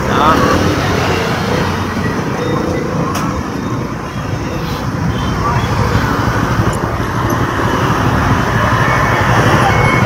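Steady city street traffic noise from passing motor vehicles.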